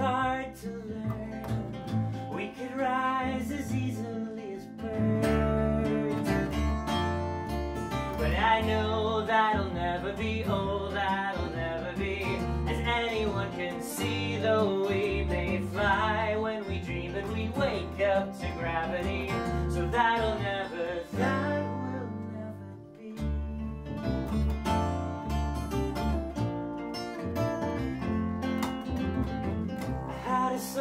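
A live folk song: an acoustic guitar is strummed over an upright bass, and a man sings.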